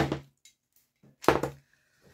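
Glass jars set down on a table: two short thunks about a second and a quarter apart.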